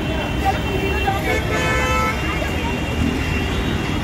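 Busy road traffic with a steady low engine rumble, and a vehicle horn honking in held tones during the first half or so.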